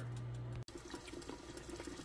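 Faint, steady hiss of liquid simmering in a lidded pot on a stove burner. A low hum in the first half-second cuts off abruptly.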